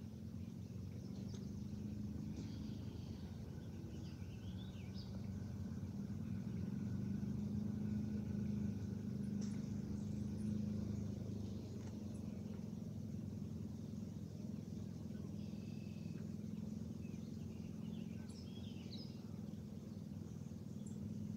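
A steady low motor hum, a little louder around the middle, with birds chirping now and then.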